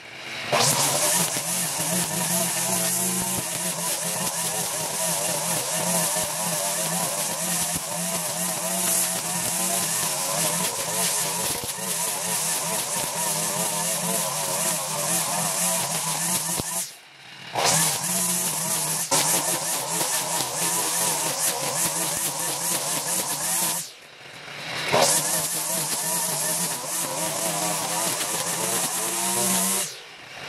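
Petrol two-stroke string trimmer (weed eater) running at high revs as it cuts down long grass, its line whirring through the growth. The sound drops away briefly twice, about halfway through and again later, then comes straight back up.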